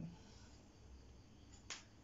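Near silence: faint room tone, with one short sharp click near the end.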